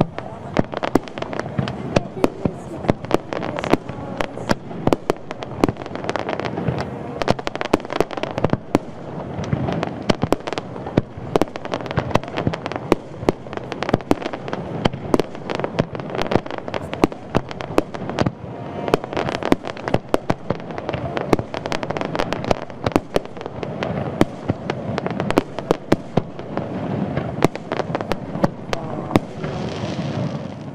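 Fireworks display: aerial shells bursting in a dense run of sharp bangs and crackles, several a second, without a break.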